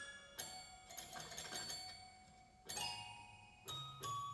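Quiet, sparse passage of live ensemble music: about three bell-like struck notes, each left to ring out, with a soft low note underneath.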